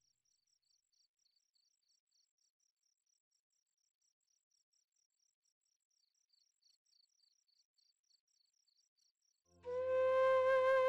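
Faint crickets chirping in a fast, regular pulse as background ambience. Near the end, music comes in with a long held tone.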